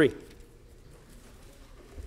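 A man's voice through a microphone ends its word with a falling pitch right at the start. Then comes quiet room tone with faint soft rustling from the Bible's pages being handled, and a brief soft knock at the very end.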